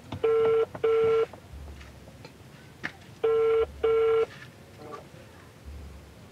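Telephone ringback tone heard over a phone's speaker: two double rings, each a pair of short steady beeps, about three seconds apart. It is the sign of an outgoing call ringing at the other end and not yet answered.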